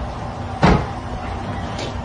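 A single loud thump about two-thirds of a second in, like something knocking or shutting, over steady background noise.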